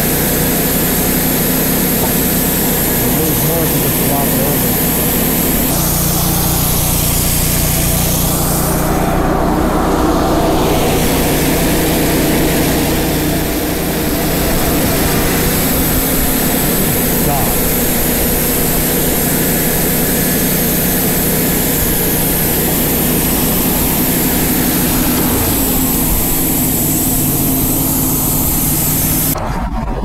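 Wood-Mizer LT35 portable band sawmill running steadily, its engine under load as the band blade saws through a black walnut log. The sound firms up about five seconds in and stops abruptly near the end.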